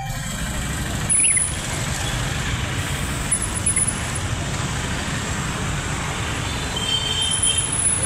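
A procession of scooters and motorcycles riding past, their small engines running under a steady wash of traffic noise, with a few faint high-pitched tones here and there.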